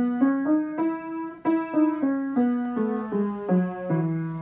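Upright piano playing the E major scale one note at a time with the left hand, about three notes a second: it climbs to the top E about a second and a half in, then steps back down the octave.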